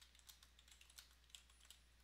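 Faint, quick keystrokes on a computer keyboard as a short sentence is typed, a run of light key clicks.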